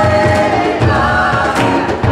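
A large mixed group of amateur voices singing a song together in harmony, choir-style, over a steady low beat.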